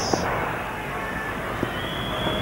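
Stadium crowd cheering after a six, a steady wash of noise with no single voice standing out.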